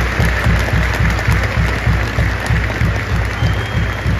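Home-goal celebration music with a heavy, steady bass beat playing loudly over a football stadium's PA, starting suddenly, with the home crowd cheering and clapping under it.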